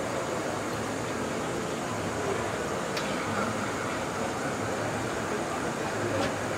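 Steady hum and hiss of a large hall or tented venue, with faint distant voices and a single click about halfway through.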